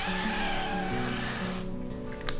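Olive oil spray hissing in one continuous burst onto a frying pan, cutting off about a second and a half in.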